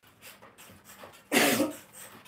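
A single cough about a second and a half in, over faint rhythmic creaking from a mini stepper being pedalled, about three or four strokes a second.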